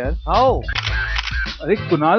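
A man's voice, with a rising-and-falling exclamation near the start, over a steady low music bed, with a noisier patch without clear words in the middle.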